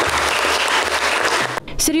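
Applause from a hall of seated deputies, a dense steady clapping that cuts off suddenly about one and a half seconds in, where a woman's voice begins speaking.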